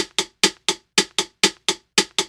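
A drum-machine beat playing back with only percussion sounding: short, sharp hits about four a second, in a slightly uneven, swung rhythm.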